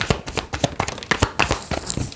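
A deck of tarot cards shuffled by hand: a rapid run of crisp card snaps and slaps, about ten a second.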